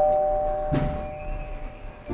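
The two notes of a ding-dong doorbell chime hold and fade away over about a second and a half. A soft knock comes near the middle.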